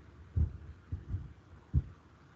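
A few short, muffled low thumps at irregular intervals, the loudest about half a second in and near the end.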